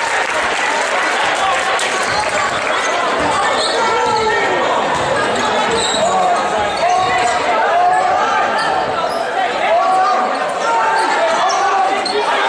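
A basketball dribbled on a hardwood gym floor during live play, over unintelligible shouting voices from players and crowd that echo through the hall.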